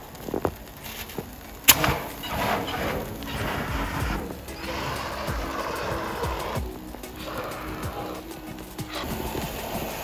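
Handheld fire extinguisher discharging onto a waste-oil fire: a sharp click about two seconds in, then a steady hiss of spray lasting about seven seconds, with music underneath.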